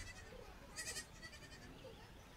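A young goat bleats once, briefly and faintly, about a second in, over faint outdoor background.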